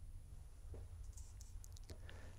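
Near silence in a pause between sentences: low room hum with a few faint, short clicks.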